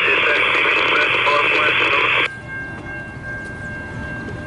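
Two-way radio transmission heard through a handheld scanner: a voice buried in loud static, which cuts off abruptly about two seconds in.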